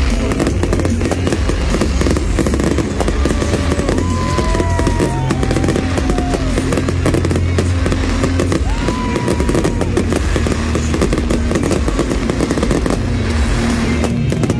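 Fireworks bursting and crackling in quick, dense succession, heard over loud music with a steady low bass.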